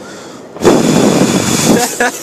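The fuse of a Pyrostar Nitraat Cracker firecracker catches and burns, a loud hiss of spitting sparks starting about half a second in and lasting about a second.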